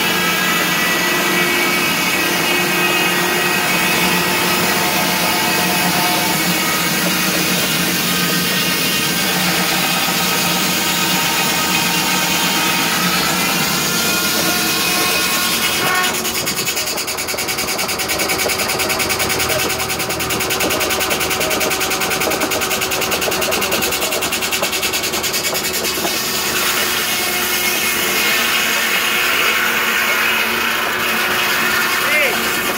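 Large circle sawmill blade sawing boards from a log, a loud continuous whine and rasp of the blade in the wood. About halfway through the sound changes abruptly and turns rougher, then the whine returns near the end.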